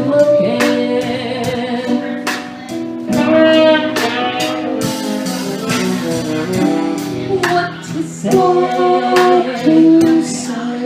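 Live band playing a slow ballad: a woman singing with keyboard and saxophone, over a steady beat. Some long notes waver with vibrato.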